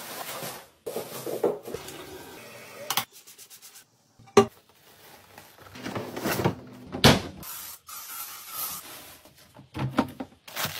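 Plastic trash bags rustling and crinkling as they are gathered, tied and emptied, with wastebaskets being handled; a sharp knock comes about four seconds in and another bang about seven seconds in.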